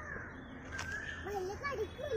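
Outdoor ambience of faint, distant voices and a few short animal or bird calls, with one sharp click a little under a second in.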